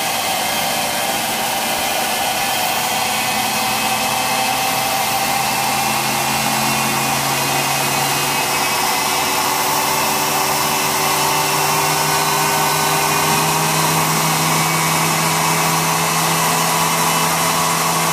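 Ignition test rig spinning a Kawasaki KH400 pickup back plate at high speed, near 10,000 RPM: a loud, steady machine whine with several tones, whose pitch creeps up slightly around the middle.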